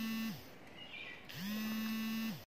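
A steady buzzing hum at one fixed pitch. It slides down and stops about half a second in, then slides back up and resumes about a second later.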